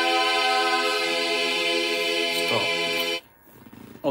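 Bulgarian women's folk choir singing a cappella, holding a long final chord that cuts off about three seconds in.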